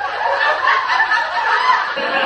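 Human laughter, continuous, with several overlapping voice-like lines.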